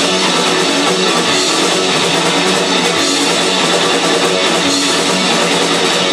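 Live rock band playing at a steady, loud level: electric guitar, bass guitar and drum kit.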